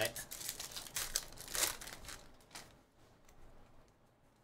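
Foil wrapper of a Bowman Draft baseball card pack being torn open and crinkled by hand: a quick run of crinkles and rips, loudest around a second and a half in, dying away after about two and a half seconds.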